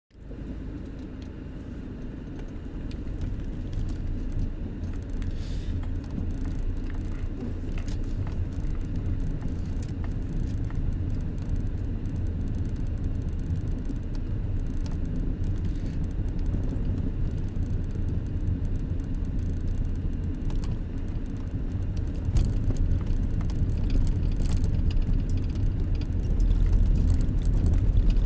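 Car driving slowly on a snow-covered road, heard from inside the cabin: a steady low rumble of engine and tyres that grows a little louder a few seconds in, with scattered light ticks.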